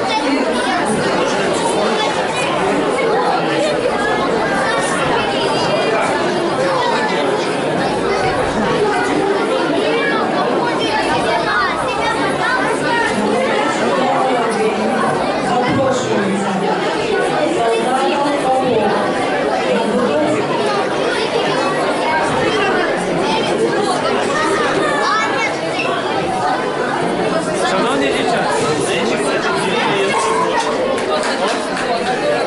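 Crowd chatter in a large hall: many overlapping voices of children and adults talking at once, with no single voice standing out.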